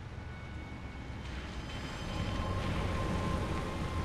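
A low rumbling ambience from the film's soundtrack that swells about two seconds in, with a faint steady high tone running under it.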